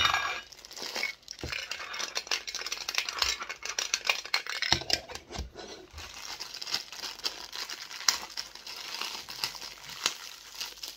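Handling a Funko Soda can and the black plastic bag that holds the figure: the plastic crinkles and rustles, with many sharp clicks and clinks and a few dull knocks against the can and table.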